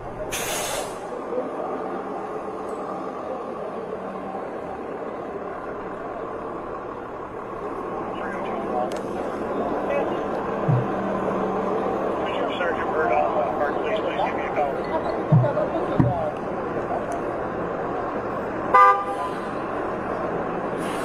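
Body-camera audio of a city intersection at night: steady traffic and street noise with indistinct voices, and a short car-horn toot near the end.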